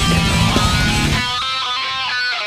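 Death metal song: distorted electric guitar over drums and bass. About a second in, the drums and bass drop out, leaving the guitar playing a riff alone.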